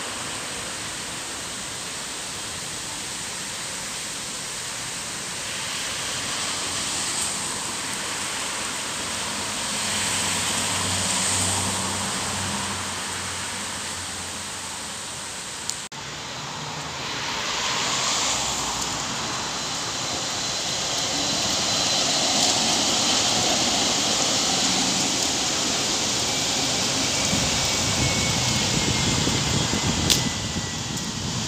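City street traffic with city buses passing, a low engine hum swelling about a third of the way in. The sound breaks off sharply about halfway, then traffic noise grows louder as another bus drives past.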